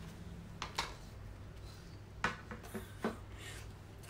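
A few faint clicks of a metal teaspoon against the mouth and bowl as a spoonful is taken, over a low steady hum.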